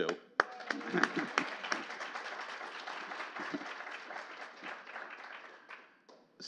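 Audience applauding, a dense patter of many hands that starts just after a short laugh and dies away gradually over about five seconds.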